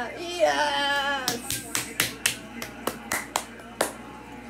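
A woman's drawn-out, excited vocal for about the first second, then quick hand clapping: about a dozen claps, roughly four a second.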